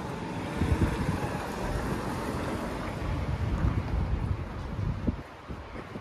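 Wind buffeting the phone's microphone in uneven low gusts over a steady hiss of street ambience, easing off near the end.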